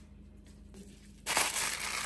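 Aluminium foil lining a baking tray crinkling loudly as gloved hands shift fish steaks on it, starting a little over a second in.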